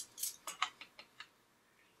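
Metal measuring spoons on a ring clinking together as they are handled: about half a dozen light clicks in the first second or so.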